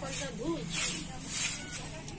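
Soft grass broom sweeping a concrete floor: a few short swishes of the bristles across the surface.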